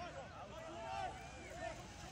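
Faint, distant voices of players and onlookers calling out across an outdoor soccer field during play.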